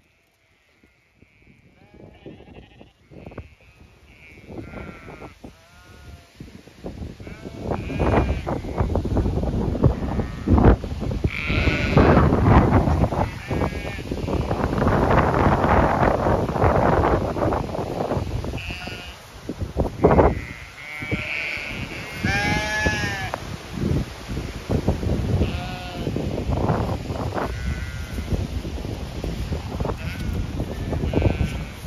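Zwartbles sheep bleating over and over, short wavering calls from several animals. From about eight seconds in, wind buffets the microphone with a rough rumble that rises and falls under the bleats.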